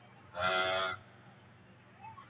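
A single drawn-out vocal sound, about half a second long and steady in pitch, like a low moan or moo.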